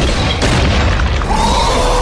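Intro sound effects: loud booming impacts over a heavy rumble, with a second hit about half a second in and a held tone that comes in partway through.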